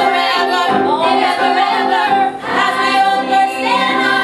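Show-tune singing with musical accompaniment, held notes wavering in pitch. The level drops briefly about two and a half seconds in, then a new phrase begins.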